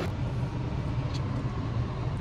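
Car interior noise: a steady low rumble from the engine and road heard inside the cabin, with a faint tick about a second in.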